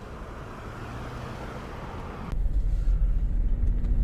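Faint road-traffic hum, then, about two seconds in, a sudden change to a louder, steady low rumble of engines in stopped traffic, heard from inside a car through a phone's microphone.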